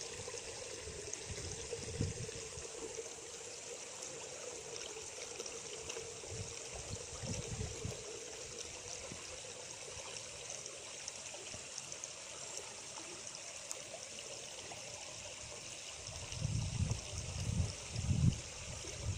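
Steady trickle and splash of water running into a pond at the bank, with a few low bumps near the end.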